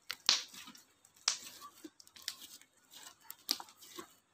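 Hands squeezing and kneading thick glossy slime, giving a run of sharp sticky pops and clicks, the loudest about a third of a second in and others roughly every second.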